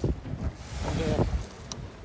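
Wind buffeting the microphone as a low rumble, with a hiss of wind and sea that swells in the middle.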